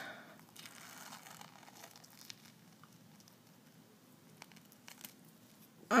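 Faint crackling and tearing of a rubbery peel-off face mask film being pulled off the skin, with a few small ticks; the film rips partway.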